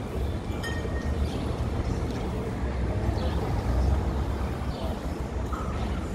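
Steady low rumble of city traffic noise, with no single event standing out.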